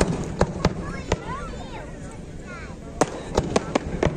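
Fireworks going off in a string of sharp bangs: several in the first second, then a quick run of four or five near the end, with voices in the background.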